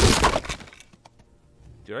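A sudden crash in the animated film's soundtrack as the cartoon lion pounces, a loud noisy burst that fades out within about a second. A man's voice begins right at the end.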